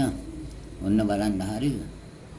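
A man's voice speaking one short phrase, about a second long, near the middle.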